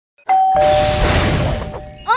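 Logo intro sound effect: a two-note falling chime, like a ding-dong, over a rushing swell of noise that fades out within about a second and a half while the chime rings on.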